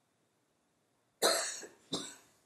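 A person coughing twice in a quiet room, a loud first cough a little over a second in and a shorter second one right at the end.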